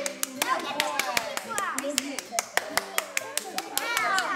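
A few people clapping by hand: sharp, uneven claps that go on through the stretch, with excited child and adult voices between them.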